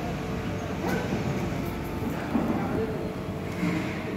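Indistinct voices talking, with a steady low background rumble.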